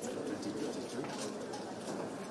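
Indistinct low murmur of several people talking in a room, with a few faint clicks.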